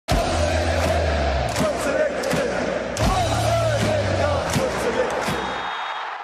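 Intro music mixed with a crowd cheering and chanting, with a deep bass hit at the start and another about three seconds in; it fades out at the end.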